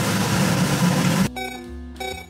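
Onions frying in a pot, a steady sizzle, which breaks off suddenly a little past halfway into a short music sting.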